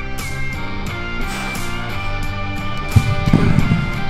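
Background music with guitar; about three seconds in, a heavy thud and a short low rumble as a pair of 120 lb dumbbells is dropped to the floor at the end of a set.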